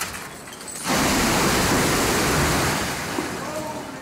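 A frozen-waterfall ice pillar breaking off and crashing down: a sudden loud rushing crash about a second in that lasts around two seconds and then dies away.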